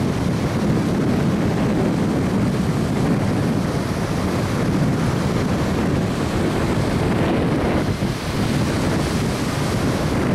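Steady wind buffeting the camcorder's microphone, mixed with the wash of surf breaking on the beach.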